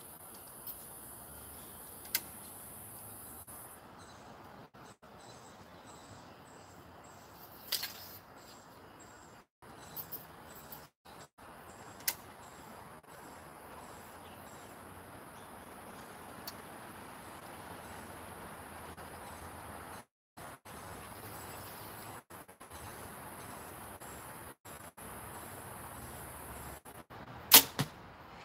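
Compound bow shot near the end: a sharp crack as the string is released, followed a fraction of a second later by a second, quieter knock. Before it, a long low stretch of faint outdoor hiss with a few light clicks while the arrow is nocked and the bow drawn.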